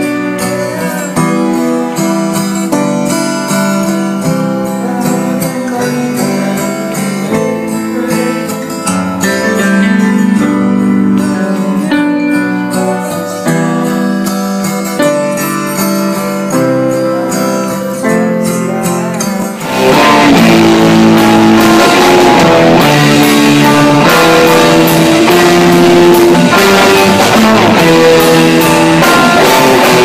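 Guitar-led band music. About 20 s in, it cuts suddenly to a louder, fuller full-band sound with electric guitars.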